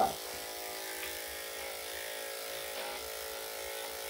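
Corded electric dog-grooming clippers running with a steady hum as the blade goes over a small dog's dried coat, a light clean-up pass that takes just a little bit off.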